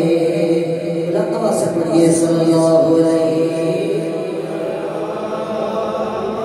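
A man's voice chanting a devotional recitation into a microphone, holding long, slowly bending notes.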